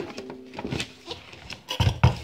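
A ukulele strummed once, its strings ringing briefly, then knocks and rubbing from the instrument and phone being handled, with a heavier thump near the end.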